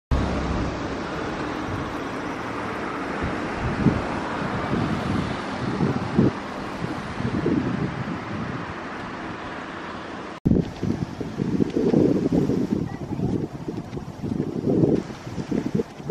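Wind buffeting an outdoor microphone: a steady hiss with irregular low gusts. The sound breaks off abruptly about ten seconds in, then resumes with stronger, uneven low gusts.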